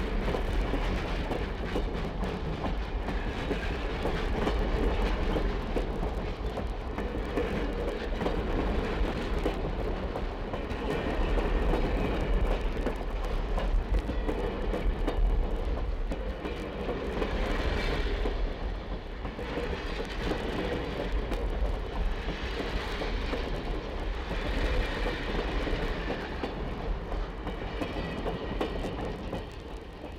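Passenger train pulling out of a station and running on the rails, heard from an exterior recording on a worn 78 rpm sound-effect disc; the sound fades near the end.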